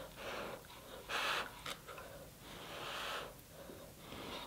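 A person blowing on hot king crab meat to cool it before biting: three puffs of breath, the last the longest.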